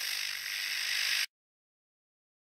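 Television static hiss, a steady white-noise sound effect that cuts off suddenly a little over a second in.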